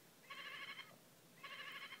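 Recorded sheep bleat played twice by a farm animal-sound toy through its small speaker. Each bleat lasts about half a second and sounds thin, with no low end.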